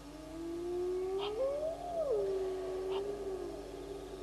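A long animal call that rises slowly in pitch, peaks about two seconds in, falls back and holds before fading out. A few faint short clicks sound during it.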